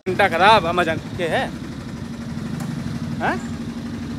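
A motor vehicle's engine idling steadily in street traffic, with short bursts of a man's voice in the first second.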